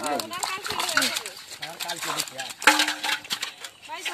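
Men's voices talking and calling out in turn, with a few short clicks among them.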